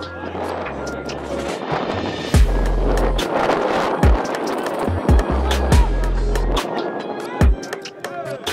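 Background music with a heavy, deep bass line and punchy drum hits; the beat gets louder about two and a half seconds in.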